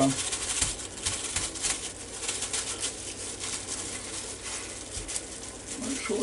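Disposable plastic food-prep glove crinkling, with soft pats and scuffs, as a pork chop is pressed and turned in flour on a ceramic plate: a faint, light rustle with small ticks.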